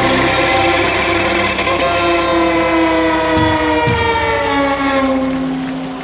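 Folk metal band playing live, holding out a final chord whose notes slowly slide downward in pitch. Two drum hits come a little past halfway, and the sound fades near the end.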